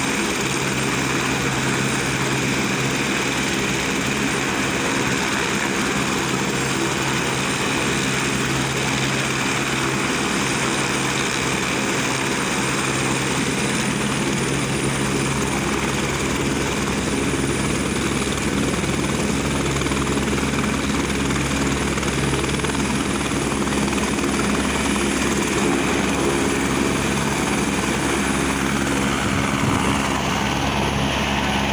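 Single-turbine AS350 Écureuil helicopter running on the ground with its rotors turning: a steady rotor beat under a constant high turbine whine. The sound changes near the end as it lifts off.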